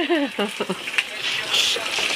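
A woman laughing briefly, followed by a few light clicks of kitchen handling and a short hiss about a second and a half in.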